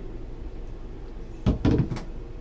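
A short knock and clatter about one and a half seconds in as a signed photo in a clear plastic holder is handled and set against the table.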